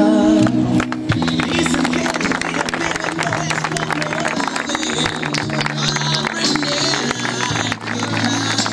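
Background music with held notes, with a small group's applause starting about a second in and running on.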